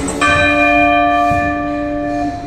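A single bell chime, struck just after the workout music cuts off and ringing on steadily for about two seconds, typical of an interval timer's bell marking the end of an exercise round.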